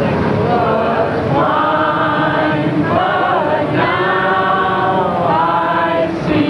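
A group of people singing together in a crowded bus, many voices holding long sustained notes between short breaths.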